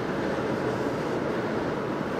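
Car tyres droning steadily over the grooved ridges of a musical road, heard from inside the car. At 55 mph the ridges do not play a recognisable tune: they are spaced for a much higher speed.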